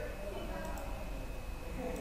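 Faint voices leaking through a participant's unmuted microphone on a video call, with a steady high whine coming in about half a second in and a couple of soft mouse clicks.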